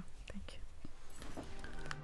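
Faint room noise with quiet voices and a few light clicks. Soft music comes in during the second half.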